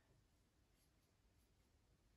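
Near silence, with faint strokes of a small paintbrush on a wooden table's spindles.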